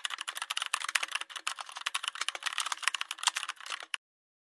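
Fast typing on a computer keyboard: a quick, irregular run of key clicks that stops just before the end.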